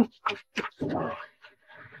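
A couple kissing: a short murmured moan, then a few brief kissing sounds and a softer, longer whimpering breath.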